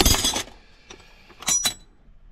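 Steel wrenches clinking against each other as they are handled in a metal toolbox drawer: a loud clank with ringing at the start, then two quick lighter clinks about a second and a half in.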